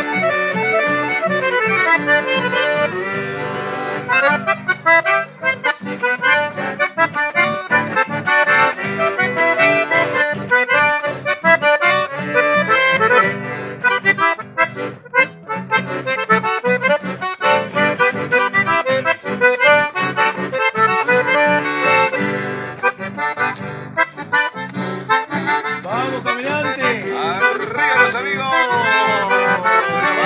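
Chamamé played live on an accordion carrying the melody, with acoustic guitar strummed in accompaniment.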